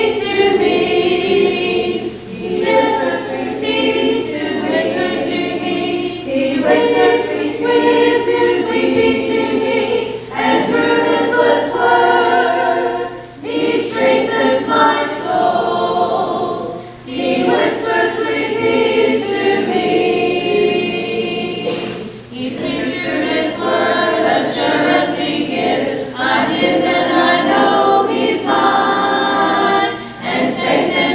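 A congregation singing a hymn a cappella, many voices together with no instruments, in phrases separated by short breaths.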